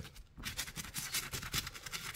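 A small brush scrubbing a lathered leather label on a catcher's mitt: a quiet run of quick scratchy strokes that starts about half a second in.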